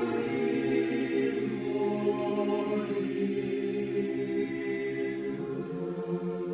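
Mixed choir singing a cappella in several parts, holding long sustained chords that move to new harmonies every second or two.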